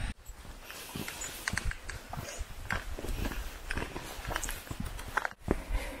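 Footsteps of walkers and a dog climbing a rocky, gritty dirt trail: irregular crunches and scuffs of shoes and paws on loose stones, with a low rumble of movement on the handheld microphone.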